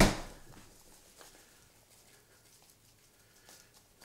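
Plastic Parmesan cheese shaker's flip-top lid snapping open with one sharp click that dies away within half a second, followed by quiet room tone with a few faint light taps.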